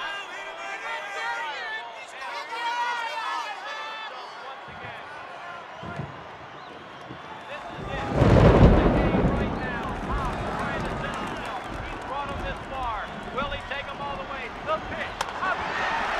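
Large baseball-stadium crowd shouting and cheering, with a couple of dull thuds, then surging into a loud roar about eight seconds in that eases back to a steady din. A sharp crack comes near the end.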